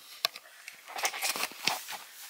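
Bedding rustling, with a few sharp clicks and soft knocks, as a toddler climbs into bed. The sounds come in a cluster from about a second in.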